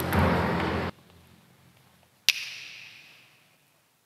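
Chanting voices with a low drum beat stop abruptly about a second in. A little past two seconds a single sharp strike rings out and fades away over about a second and a half.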